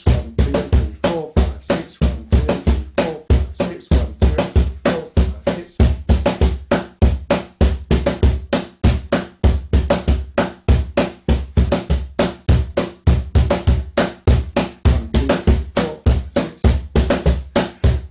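J. Leiva wooden cajón played with bare hands in a steady Peruvian marinera rhythm counted in six. Deep bass strokes from the strong hand alternate with higher tone strokes from the other hand near the top edge, about four to five strokes a second without a break.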